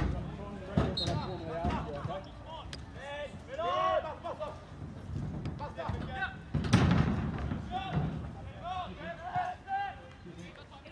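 Shouted calls from players and onlookers at a soccer match, with the dull thud of a football being kicked several times; the loudest kick comes about seven seconds in.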